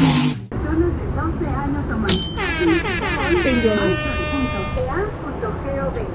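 A short loud whoosh at the very start, then an air horn sounds for about two and a half seconds, its pitch sliding briefly before it settles into a steady multi-tone blast.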